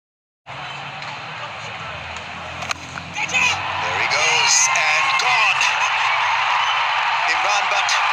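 Cricket ground crowd noise, starting half a second in. A sharp crack of bat on ball comes about two and a half seconds in, then shouting and cheering grow louder as the catch is taken and the wicket falls.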